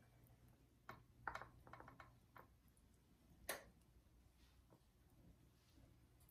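Near silence with a few faint clicks and soft taps as drained pineapple rings are picked from a mesh strainer and laid into a metal baking pan; the sharpest click comes about three and a half seconds in.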